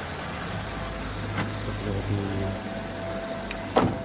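Car engine running, heard from inside the car as a steady low hum, with faint muffled voices and one sharp knock near the end.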